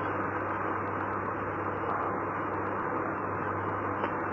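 Steady hiss with a low, constant hum: the background noise of an old tape recording, with no speech.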